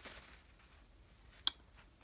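Quiet room tone with a single sharp click about one and a half seconds in: a copper penny ticking against fingers or a fingernail as it is handled.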